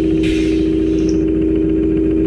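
Steady machine hum from the simulated conveyor line of the PC machine simulator, a running-motor sound effect.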